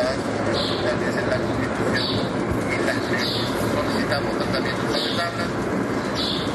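Indistinct voices from a council session over a dense, steady background noise.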